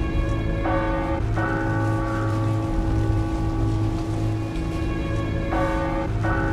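Church bells ringing with long, overlapping tones that shift in pitch twice, over a steady hiss of rain.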